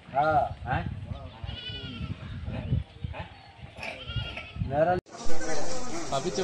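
People's voices in short phrases that rise and fall in pitch. About five seconds in the sound cuts off abruptly and a different, hissier recording with a louder voice begins.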